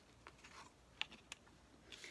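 Faint, light clicks of a tarot card being drawn off the deck and laid down on a cloth-covered table: several soft ticks, the clearest about a second in.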